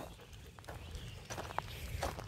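Faint, irregular crunching footsteps on wood-chip playground mulch as a person and dog walk.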